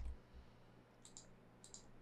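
Near silence with two faint computer mouse clicks, about a second in and again half a second later.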